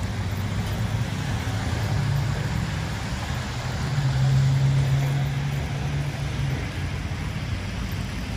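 An engine running steadily nearby with a low hum under a steady hiss; its note rises slightly about two seconds in and is higher and louder from about four to six and a half seconds.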